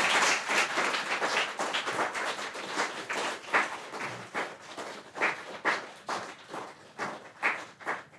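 Audience applauding: dense applause at first that thins out to separate, scattered claps and is dying away near the end.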